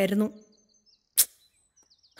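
A woman's voice finishing a phrase, then quiet broken by a single brief hiss about a second later, with faint high chirps in the background.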